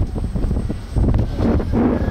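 Wind buffeting the microphone of a camera riding in an open sightseeing cart as it moves, a loud, uneven low rumble.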